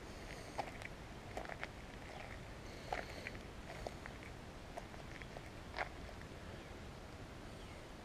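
Footsteps on a gravel track, irregular crisp crunches about once a second over a steady low rumble of wind on the microphone, with a few faint short chirps.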